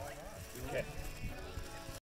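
Indistinct voices of people talking, over faint background music.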